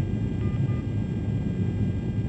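Steady low rumble of air and engine noise inside an aerial refueling tanker's boom operator station in flight. Two short faint tones sound about half a second in.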